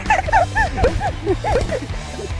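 A quick string of about a dozen short, high, dog-like yelps, each rising then falling in pitch, over steady background music.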